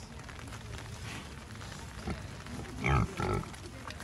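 Domestic pig grunting twice in quick succession about three seconds in, over a low steady background.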